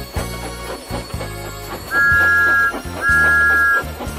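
Two loud, steady two-note blasts of a steam locomotive whistle, each just under a second long, sound in the second half over bouncy instrumental music with a pulsing bass.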